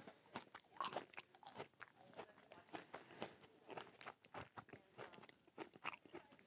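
A man chewing a raw madrone berry: faint, quick, irregular crunches and wet mouth clicks.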